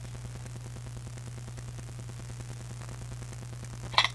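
Steady low hum with faint hiss: room tone, with no other sound until a short click right at the end.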